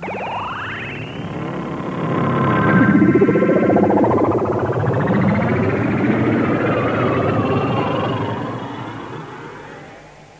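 Cartoon magic sound effect made on a synthesizer: many sweeping tones gliding up and down over one another, swelling about two seconds in, with a warbling tone in the middle. It fades away near the end.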